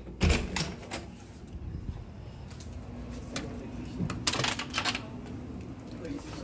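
Handling noise from a phone held against the body: two bursts of quick clicks, knocks and rubbing on the microphone, one at the start and one about four seconds in, over a low steady background.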